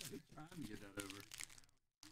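Foil trading-card packs crinkling and clicking as they are handled, under faint speech.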